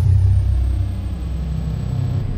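Loud, deep cinematic rumble from a film trailer's opening, held steady, with a faint high whine that drops in pitch near the start.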